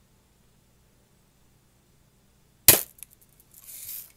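Daisy Red Ryder lever-action, spring-piston BB gun firing a single shot: one sharp crack about two and a half seconds in, then a few faint ticks and a short soft hiss. The chronograph reads this shot at 288.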